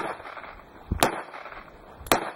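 Two pistol shots about a second apart, sharp and loud. The first comes right at the start and the second about a second in.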